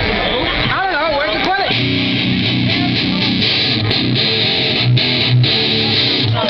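A loud rock band playing live through amplifiers: distorted electric guitar chords over bass and drums, with a wavering voice singing or calling out over the music about a second in.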